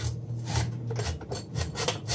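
Metal exhaust silencer canister from a 1990 Kawasaki GTR 1000, scraping and knocking against a steel workbench as it is turned and shifted by hand, in a quick run of irregular rasping scrapes.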